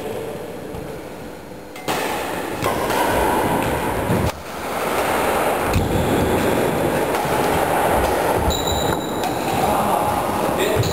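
Doubles badminton rally on a wooden sports-hall floor: a steady rumbling hall noise with the players' footsteps and shuttlecock hits, and brief high shoe squeaks on the floor near the end.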